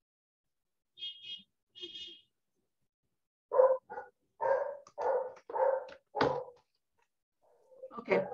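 A dog barking six times in quick succession over a video call's audio, after two brief high squeaks about a second in.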